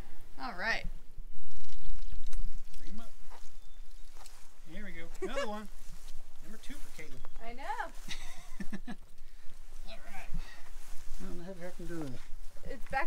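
Voices talking and exclaiming, too indistinct to make out. About a second in, a loud low rush of noise on the microphone lasts about a second.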